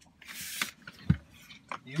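Handling noises: a brief rustle, then a single sharp knock a little past a second in, and a soft click near the end.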